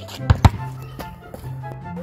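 Basketball bouncing on asphalt: two sharp hits close together, about a third and a half second in, over steady background music.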